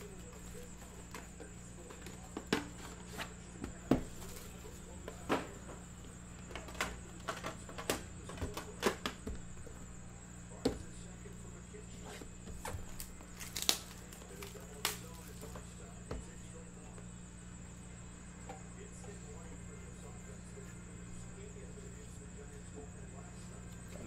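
Scattered clicks and taps of a cardboard product box and a metal card tin being handled on a table, over a steady electrical hum. The handling is busiest in the first 16 seconds and thins out after that.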